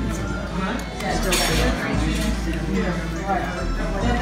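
Metal fork clinking against a ceramic plate while cutting into mochi, with one sharper clink about a second in.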